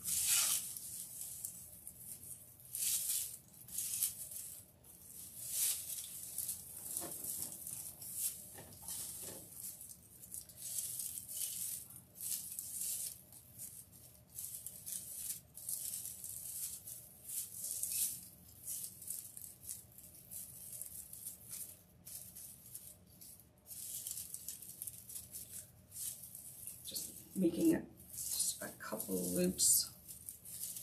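Dry raffia rustling as strands are pulled loose and gathered by hand, in short irregular spells of rustling. A brief murmur of a voice comes near the end.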